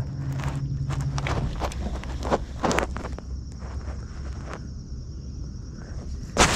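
A scatter of irregular knocks and clicks of someone moving about and handling gear on a boat deck, over a faint steady hum.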